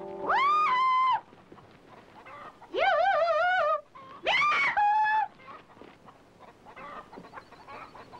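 A man's high falsetto calls: three drawn-out calls, each swooping up and then holding. The middle call warbles up and down.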